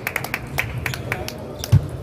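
Table tennis balls clicking off bats and tables from several matches in a large hall, a few sharp knocks a second, with one dull thump near the end that is the loudest sound.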